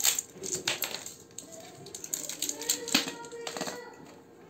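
Irregular clicks and clatter of hands handling a 1/16-scale RC dump truck and its small plastic and metal parts, loudest near the start and about three seconds in.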